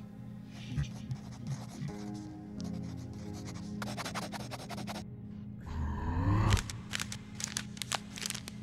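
Pencil scratching on paper in quick, dense strokes through the middle, over a low ambient music drone. Near the end a rising swell builds to the loudest moment, followed by a few sharp ticks.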